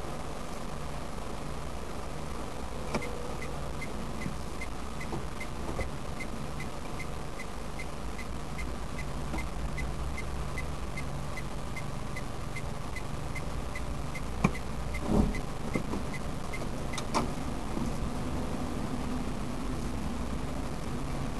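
Car engine idling, heard inside the cabin, with the turn indicator relay ticking steadily from about three seconds in until a few seconds before the end. Near the end of the ticking come a few knocks and a low thump.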